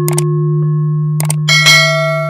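Sound effects of a subscribe-button animation: a steady low tone held under two pairs of quick clicks, then a bright bell chime that rings on from about one and a half seconds in.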